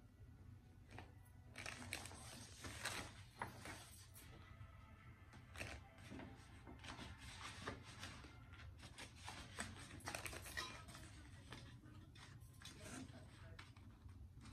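Faint handling noise: irregular rustling and crinkling with light clicks and taps as a flat-pack shoe rack's metal poles, plastic connectors and fabric shelf are sorted and fitted together. The busiest handling comes about two to four seconds in and again about ten seconds in.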